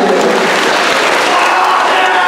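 An audience clapping, mixed with voices from the crowd.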